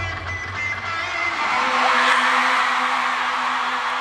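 A live band's song ending: the bass and drums stop about half a second in, leaving one sustained note held. An arena crowd's cheering and screaming swells up over it, with shrill whistles.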